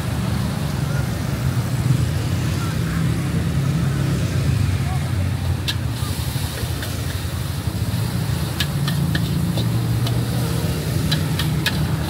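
Metal spatula clinking and scraping against a wok during stir-frying, in sharp clusters in the second half, over a steady low rumble from the gas wok burner and street traffic.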